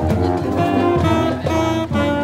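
Marching band playing as it passes: a sousaphone's bass notes under saxophones and other horns carrying the tune.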